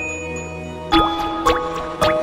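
Intro music with water-drop sound effects: two sharp drips land about a second in and half a second later over sustained musical tones.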